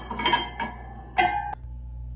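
Steel disc-harrow parts clinking as an end cap is slid down the axle onto a disc. A short metallic ring comes a little past halfway and cuts off suddenly.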